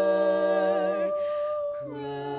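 Women's barbershop quartet singing a held chord a cappella. About halfway through, the lower voices drop out and one voice sustains its note alone, and a new chord comes in near the end.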